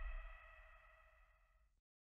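The tail of a logo sting's ringing, gong-like chord: several held tones fade away and cut to dead silence just before the end.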